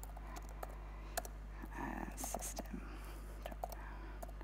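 Computer keyboard typing: scattered, irregular keystroke clicks as a line of code is entered, over a steady low mains hum.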